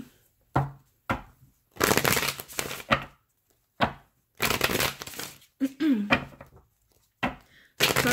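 A deck of Gilded Reverie Lenormand cards being shuffled by hand, in about six separate bouts of rustling and flapping, each lasting under a second to about a second, with short silent pauses between them.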